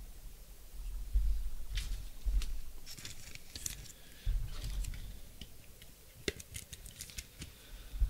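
A trading card being handled and slid into a rigid clear plastic card holder: scattered plastic clicks and rustles, with a few low handling thumps.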